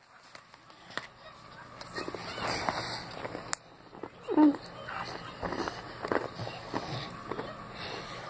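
Handling noise from a phone held close to the microphone: rubbing and small knocks of fingers and fabric. About four and a half seconds in there is a short voice sound that falls in pitch.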